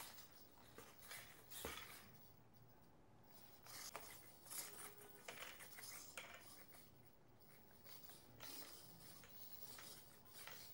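Near silence with faint scattered rubbing and small clicks from a foam model airplane being handled and turned by hand.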